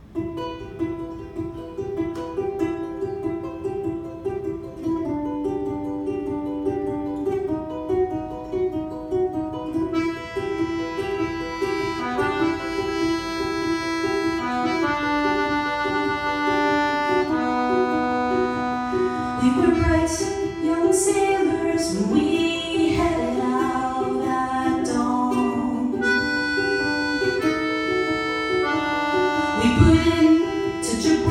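Ukulele picking a repeating figure under a piano accordion playing held chords and melody: the instrumental introduction of a slow, serious song, before the voice comes in.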